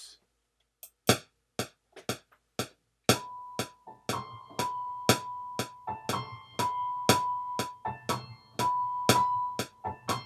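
MPC software metronome clicking twice a second at 120 BPM, four clicks alone as a one-bar count-in. Then, from about three seconds in, held keyboard-instrument notes are recorded over the continuing click.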